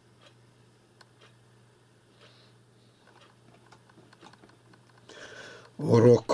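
Faint, irregular clicks of a computer mouse over a low steady hum. A man's voice starts speaking at the very end.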